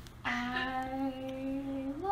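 A woman humming one long, steady note that starts about a quarter second in, then stepping up to a higher note at the very end.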